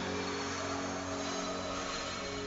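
Magical 'orbing' teleport sound effect: a shimmering whoosh over sustained background music.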